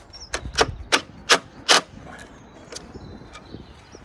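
Cordless impact driver tightening a screw through a wooden bird box into a wall plug. Its hammer action knocks in a short run of sharp impacts, about five in the first two seconds, as the screw bites and pulls the box in, with that "dook" sound. A couple of fainter clicks follow.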